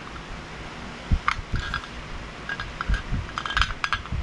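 Aluminium bait-mold plates clinking and knocking as the mold is handled and worked open: a scatter of short metallic clicks and light taps, busiest toward the end.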